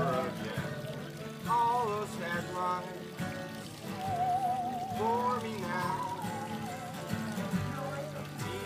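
Bowed musical saw playing a sliding melody over several strummed acoustic guitars, its pitch gliding between notes and wavering on a long held note about four seconds in.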